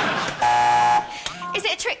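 Quiz-show contestant's buzzer sounding once, a steady harsh buzz about half a second long, starting just under half a second in.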